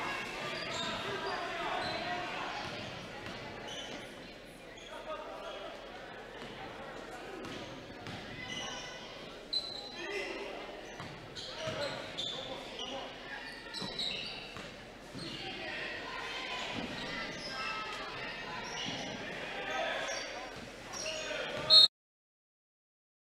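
Basketball dribbled on a hardwood gym floor, with indistinct players' and coaches' voices echoing in a large gymnasium. Just before the end a loud knock is heard, and then the sound cuts out abruptly.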